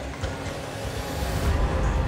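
Airport baggage-hall background: a low steady rumble under a hiss.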